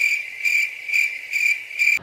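A cricket-chirping sound effect: a high, steady chirp pulsing a few times a second. It is cut in abruptly after the speech, the usual comic 'crickets' gag for an awkward pause.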